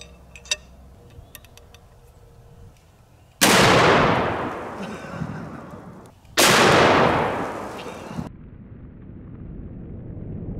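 Serbu RN50 single-shot .50 BMG rifle firing: two very loud blasts about three seconds apart, each followed by a long rolling echo that dies away. Before them come a few faint clicks of the rifle being handled.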